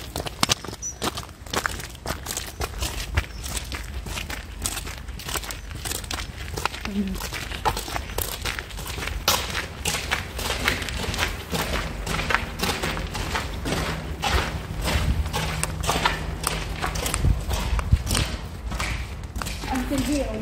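Footsteps crunching and scuffing along a gravel and paved towpath as a small group walks into a concrete underpass, over a steady low rumble.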